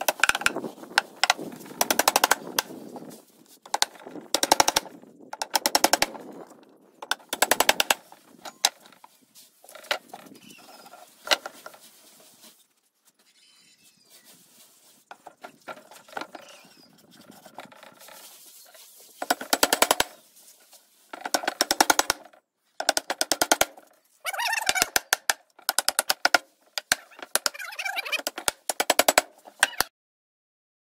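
A claw hammer tapping small nails into pine slats, in quick runs of taps with pauses between runs.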